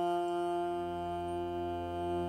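Hurdy-gurdy (viola de roda) sounding a steady, sustained drone with held notes above it, its wheel-bowed strings ringing without a break; a deeper low drone swells in about a second in.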